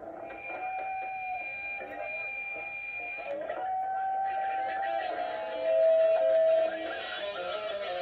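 A live band with electric guitar, long held guitar notes ringing over the playing, loudest about six seconds in. The sound is thin and muffled, played back from an old home video through a TV speaker.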